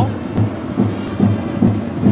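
Stadium drumming from the supporters in the stands: a steady beat of low thuds, about two to three a second, over the general noise of a football crowd.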